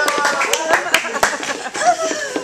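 Irregular hand clapping, about eight sharp claps spread unevenly, mixed with excited wordless voices and laughter.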